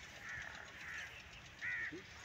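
A bird calling in short, high calls, three times, the last near the end the loudest.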